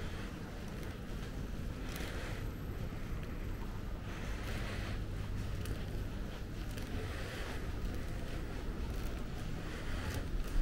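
Steady low hum of a large, near-empty airport terminal hall, with soft swells of hiss every two to three seconds.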